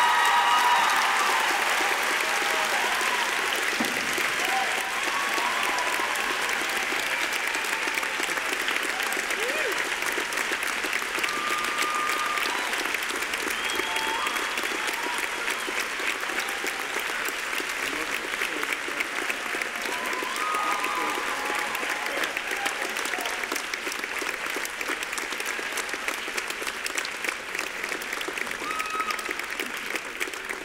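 Sustained applause from a large audience in a hall, with scattered voices calling out over it. It swells up at the start and eases off a little toward the end.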